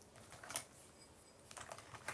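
Faint, irregular tapping and clicking of fingers on a smartphone, with the sharpest click about half a second in and a quick run of lighter taps near the end.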